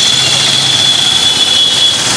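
Loud, steady rushing noise like a jet, with a steady high whine held over it.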